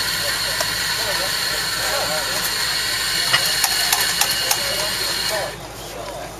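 Espresso machine steam wand hissing steadily, with a few light clicks near the middle, then shutting off about five and a half seconds in.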